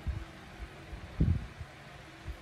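Soft, low handling thumps from a phone being held and its touchscreen tapped, the loudest about a second in, over a faint steady hum.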